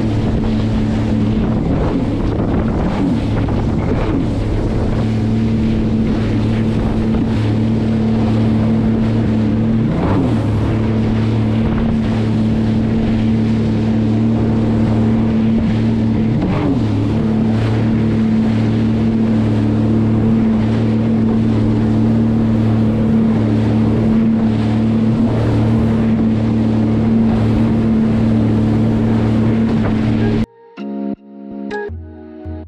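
Sea-Doo jet ski's engine running steadily under way at speed, its pitch dipping and rising again briefly a few times, with wind rushing over the microphone.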